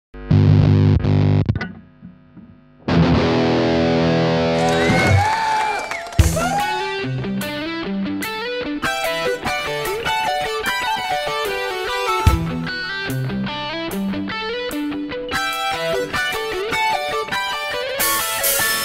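Intro music on distorted electric guitar. A held chord drops away about two seconds in, then another held chord comes in with notes bent up and down, and from about six seconds a quick run of single notes follows.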